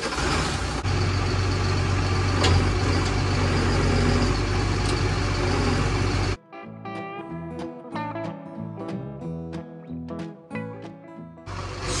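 A lorry's diesel engine running steadily, its low hum getting stronger about a second in. About six seconds in the engine sound cuts off abruptly and background music with plucked notes and a steady beat takes over.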